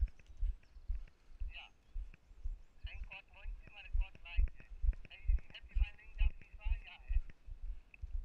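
Walking footsteps picked up as dull thuds through a body-worn camera, about two steps a second at an even pace, with faint talking behind them.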